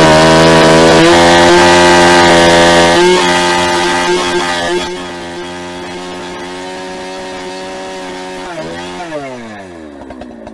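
Holzfforma 395XP two-stroke chainsaw running at full throttle while cutting through a large log. It gets quieter about five seconds in, and near the end the revs fall away toward idle as the throttle is released.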